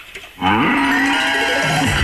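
A recorded cow mooing, one long moo that starts suddenly about half a second in and runs on past the end, dropping in pitch near the end.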